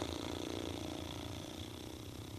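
Steady low background noise of a small studio room, with a faint constant high-pitched hum and no clear event.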